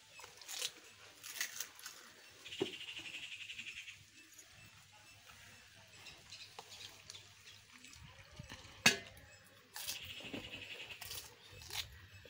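Crisp pani puri shells cracking and crunching as they are broken open and eaten, a few short sharp cracks, the loudest about nine seconds in. A rapid high trill sounds twice in the background, for about a second and a half each time.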